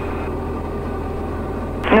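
Steady drone of a Diamond DA40 Diamond Star's piston engine and propeller in cruise flight, heard inside the cabin.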